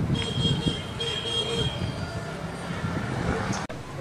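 A distant vehicle horn tooting twice in the first second and a half, a steady high tone, over low outdoor traffic rumble.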